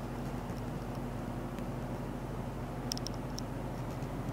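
Steady low background hum with a few faint clicks about three seconds in.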